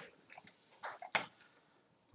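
Computer mouse clicks: two sharp clicks about a second in, after a short hiss.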